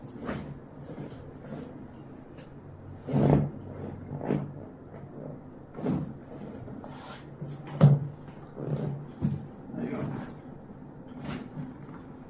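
Irregular knocks and creaks of a padded chiropractic treatment table and of hands handling the patient's body during hands-on manipulation. The loudest knock comes about eight seconds in.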